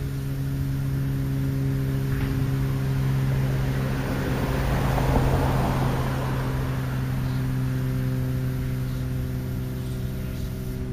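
A steady low mechanical hum, with a rushing noise that swells to a peak about halfway through and fades again, the pattern of a vehicle passing by.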